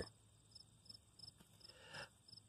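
Faint cricket chirping in near silence: regular high pulses about three a second over a steady very high trill, with a soft rustle near the end.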